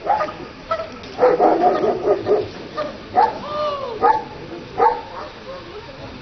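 A German shepherd-type dog giving short, excited yipping barks, about five, with a whine that rises and falls in pitch a little past the middle.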